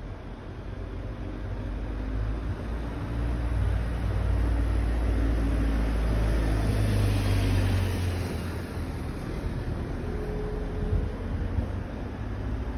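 A motor vehicle passing along the street: its engine and tyre noise build over a few seconds, are loudest in the middle, then fade away.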